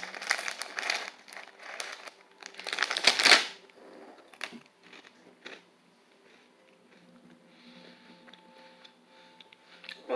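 Plastic snack bag crinkling and rustling as it is handled, loudest about three seconds in, then quiet with a few faint clicks.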